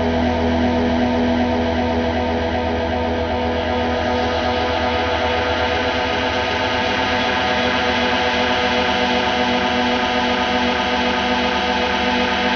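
Live band's electric guitar and bass sustaining a droning wash of held, effects-laden notes, with no drumbeat.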